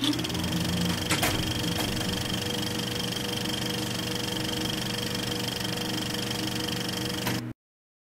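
Film projector running: steady mechanical running with a fast rattle and a constant high whine, a click about a second in, stopping abruptly near the end.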